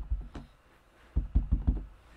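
Clear stamp block with a grass stamp being tapped onto an ink pad to ink it: one dull knock, then a quick run of several more about a second in.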